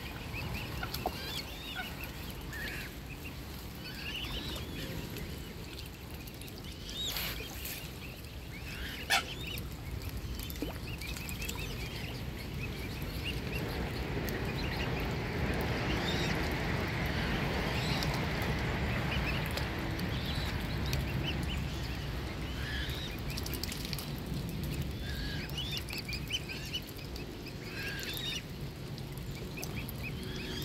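Mute swan cygnets peeping: many short, high calls, repeated all through. A soft rushing noise swells in the middle, and there are a couple of sharp clicks, the louder about nine seconds in.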